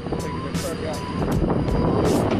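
A vehicle driving over a farm track, its engine running steadily, with wind on the microphone.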